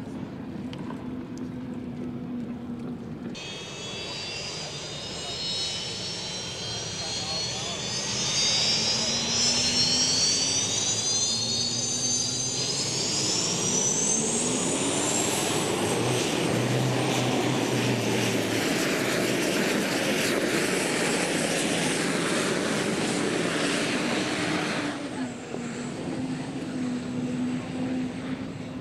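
Unlimited racing hydroplane's gas-turbine engine: a high whistling whine that comes in suddenly and climbs in pitch, swelling into a loud, even rushing roar as the boat runs past, then dropping away a few seconds before the end.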